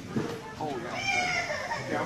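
Indistinct background voices, including high-pitched ones like children's, with no clear words.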